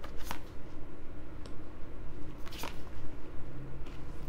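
Tarot cards being handled at the deck and drawn off it, with short sharp card snaps: a stronger one about a third of a second in, a softer one about halfway, and another strong one about two and a half seconds in.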